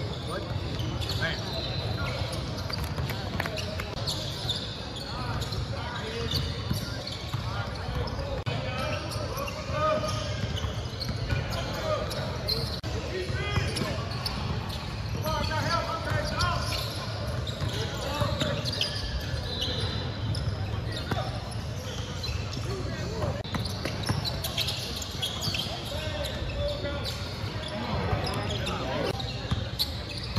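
Live basketball game sounds in a gym hall: a basketball bouncing on the hardwood court amid players' and spectators' voices, with the echo of a large hall.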